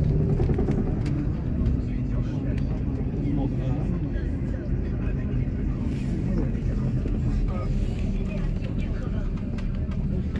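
Bus engine and road noise heard from inside the passenger cabin, a steady low rumble with a faint hum.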